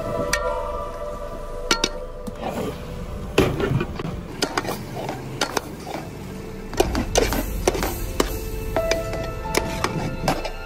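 Background music, with a steel ladle clinking and scraping irregularly against a large aluminium pot as cooked rice is tossed and mixed with fried soya chunks.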